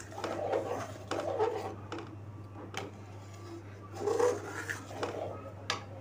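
Steel spoon stirring milk in an aluminium kadhai, scraping and clicking against the pan a couple of times, over a steady low hum. Faint speech-like voices come and go in the background.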